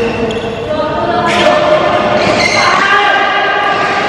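A badminton rally in a large, echoing hall: sharp strikes of a Flypower Cakra racket on a shuttlecock, about a second apart.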